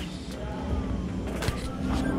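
Low rumble and handling noise from a handheld camera being swung around, with a single sharp click about one and a half seconds in.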